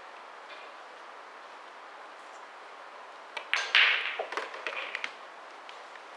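A pool shot: the cue tip hits the cue ball, a sharp clack as it strikes the black 8 ball, then a run of knocks and rattles as the 8 ball drops into a pocket. The sounds come about three seconds in and are over within about two seconds.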